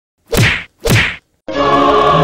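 Two quick whack sound effects about half a second apart, each sweeping down in pitch. Choral music starts near the end.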